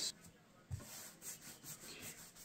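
Faint rubbing of a small foam paint roller rolling white paint across a plywood board, in soft back-and-forth strokes.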